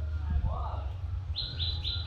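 A bird calling a rapid series of short, falling chirps, about five a second, starting past the middle, over a low steady rumble.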